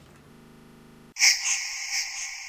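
Faint steady hum of room tone, then a little over a second in a loud high-pitched sound starts suddenly and holds on, pulsing slightly and slowly easing.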